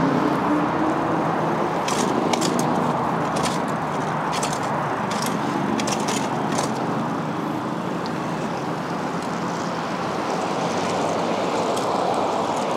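Steady city traffic noise, with a scatter of short sharp clicks and rattles in the first half.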